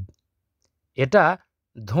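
Only speech: a voice reading a story aloud, with a pause of about a second of silence between words.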